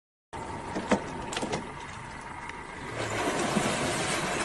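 Steady background noise with a few sharp clicks, then from about three seconds in a louder rush of splashing water as a jaguar lunges out of the river onto a caiman.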